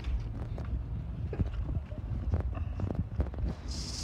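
Metal spoon stirring soft slime in a paper plate, with irregular small clicks and taps as it works the mix, over a low steady rumble; a short hiss near the end.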